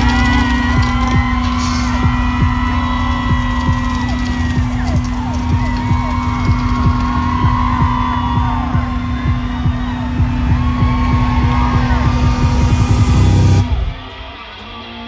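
Loud live rock music from a festival stage's sound system, a held low note over heavy low end, with crowd members yelling and whooping over it. It cuts off abruptly just before the end.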